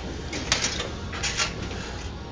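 Two hard, hissing breaths from an exhausted lifter, about half a second in and again past the middle, over a steady low hum of the gym.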